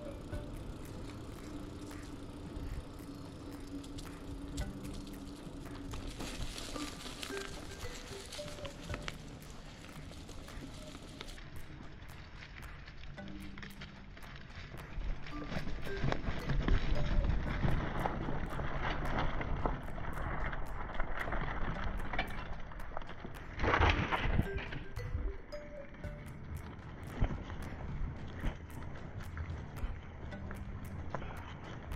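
Background music with held notes throughout. From about halfway, the rolling rumble and rattle of a bicycle riding over a leaf-strewn dirt trail grows loud, with one brief louder burst near the end.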